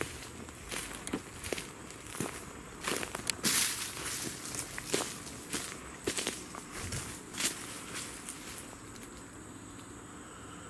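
Footsteps on dry leaf litter and twigs at an uneven walking pace, loudest about a third of the way in and dying away near the end.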